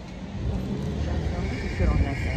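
Outdoor city background: a low, uneven rumble of road traffic, with a brief voice near the end.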